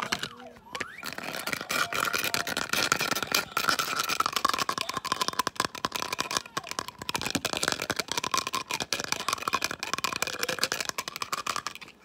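Dense, rapid crackling and clicking from a plastic marker and fingers worked right against the phone's microphone, ASMR-style. A wavering high tone runs through it.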